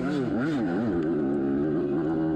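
Yamaha YZ85 two-stroke dirt bike engine, heard on board, revving up and down in quick blips through the first second, then holding a steadier pitch.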